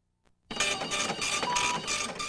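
Lottery terminal's ticket printer running as it prints and feeds out a ticket: a rapid rhythmic chatter of about five strokes a second that starts suddenly half a second in.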